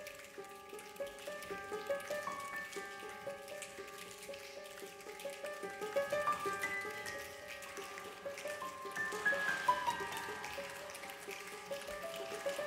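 Concert band and piano playing quietly: many short, plinking notes over a few held tones, with a hissing shimmer that grows near the end.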